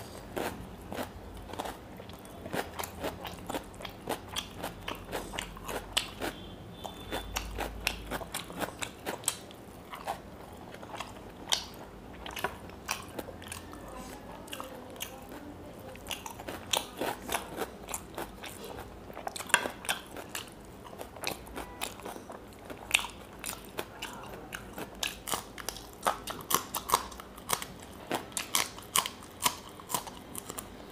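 Close-miked chewing of fried fish eaten by hand, with many sharp, irregular crunches and mouth clicks.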